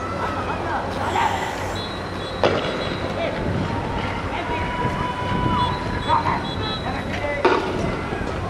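Noisy street clash: scattered shouting voices over a steady rumble, broken by two sharp bangs, one about two and a half seconds in and another near the end.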